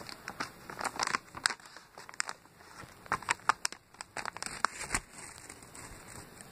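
Paper chocolate-bar wrapper crinkling and rustling in scattered sharp crackles as it is handled and unfolded.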